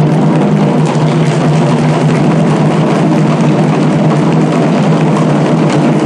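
Several shoulder-slung okedo taiko drums beaten together in a fast, unbroken roll, making a loud, dense rumble with no break between strokes.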